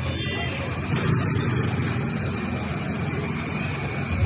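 Motorcycle and scooter engines running as they ride through a waterlogged street, over a steady street din.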